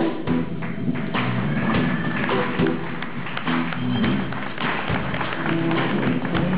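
Live blues band playing, with a drum kit keeping the beat and sharp hand claps along with it.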